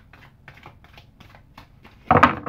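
A tarot deck being shuffled by hand: a quick, irregular run of faint card clicks.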